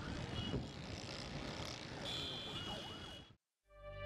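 Faint city ambience: a steady hiss of distant traffic with the wavering high tones of a far-off siren. It cuts off suddenly near the end.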